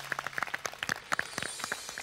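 A small group of people clapping their hands: many quick, uneven claps.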